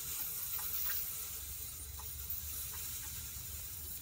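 Steady hiss of hot air from an Edsyn 1072 hot-air rework station's fan tip, blowing at about 8 PSI over a surface-mount chip's leads to reflow the solder, with a few faint ticks.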